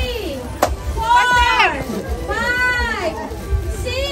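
Children shouting and cheering in two long, high calls, one about a second in and one near the end of the third second, over background music.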